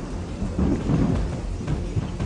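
Low rumbling thunder over a steady hiss of rain, swelling about half a second in and easing after about a second.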